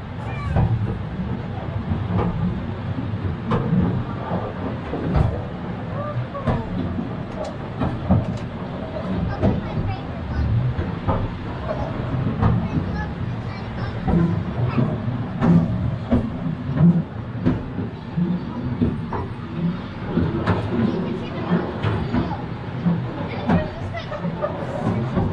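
Carriage of the Scenic Railway, a steep cable-hauled incline railway, rumbling and clacking down its track, with frequent irregular clicks over a steady low rumble. Passengers' voices run underneath.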